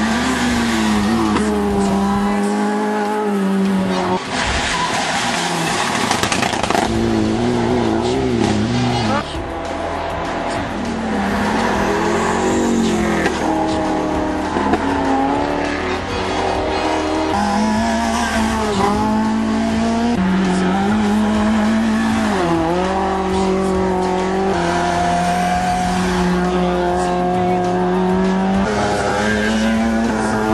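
Racing car engines pulling hard up a hill-climb course, one car after another: a high, steady engine note held for several seconds at a time, dipping and rising again at each gear change.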